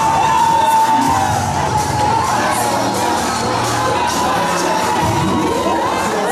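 A large audience cheering and shouting, with high shrieks, over music.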